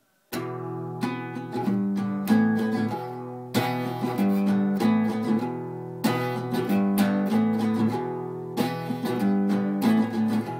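Instrumental intro of a country/Americana song on acoustic guitar, strummed chords starting about a third of a second in, with a strong new strum roughly every two and a half seconds.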